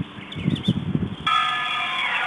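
Church bells ringing: several steady ringing tones cut in suddenly a little over a second in. Before that there are low muffled thumps and a few faint high chirps.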